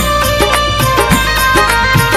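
Qawwali music in an instrumental passage, with no singing: sustained harmonium tones over a steady hand-drum beat.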